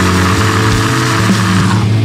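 Progressive death metal: heavily distorted electric guitars hold a sustained chord with little deep bass under it, the low end coming back in at the very end.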